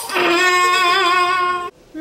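A girl's voice holding one long, loud yell at a steady pitch with a slight waver, cut off suddenly after about a second and a half.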